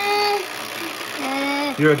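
Wind-up timer of a Perfection board game running as the clock counts down to the pop-up. Over it, a child holds two long, high 'uhh' sounds, and a man starts speaking near the end.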